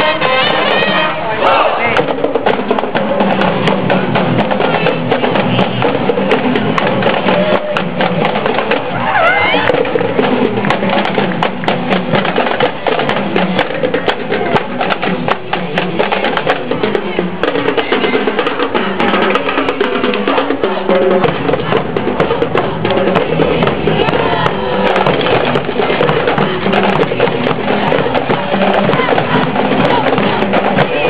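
Marching band playing as it passes: brass horns holding notes at the start, with a drumline of snare and tenor drums beating a steady rhythm throughout.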